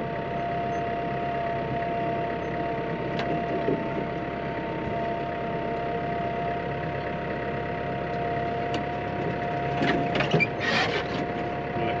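Tractor engine running steadily, heard from inside the cab, with a steady whine over the engine noise and a couple of short knocks or rattles near the end.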